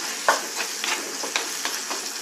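Garlic and masala powder sizzling in oil in a clay pot while a spoon stirs through them, scraping and knocking against the pot several times over a steady frying hiss.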